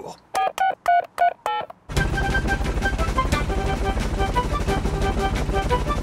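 Mobile phone keypad beeps, a quick run of about eight short tones as a number is dialled to call for help. About two seconds in, a helicopter's fast rotor beat comes in under a music cue.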